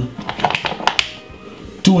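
A quick run of light clicks and taps in the first second, from kitchen utensils as chopped onion is added to a glass bowl of raw chicken.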